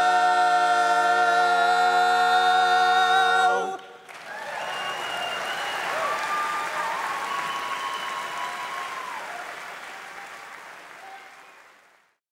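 Four-part male barbershop quartet, a cappella, holding the final chord of the song, which cuts off sharply about three and a half seconds in. Then audience applause, fading out.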